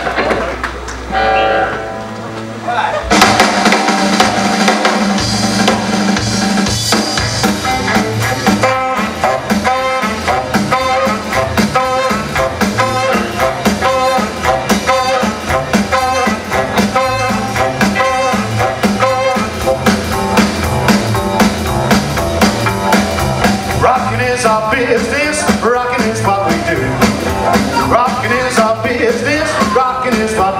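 Live rockabilly band with drum kit, upright bass and electric guitar kicking into a song about three seconds in, after a brief lull with a low hum; the music then runs on at full level with a steady drum beat.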